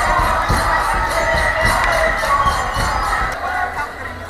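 Dense crowd of many voices shouting and cheering together, over a steady rhythmic beat of about three strokes a second. The din eases slightly near the end.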